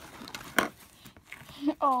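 Hands kneading a mass of sticky slime in a clear plastic tub, a soft squishing with one sharp pop about half a second in.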